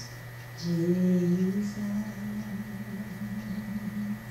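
A woman's voice humming a slow, wavering melody line without words into a microphone, unaccompanied, starting about half a second in. A steady low hum runs underneath.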